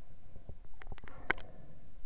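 Muffled underwater sound picked up by a submerged camera: a low, steady rumble with a scatter of sharp clicks and knocks, the loudest a little past the middle.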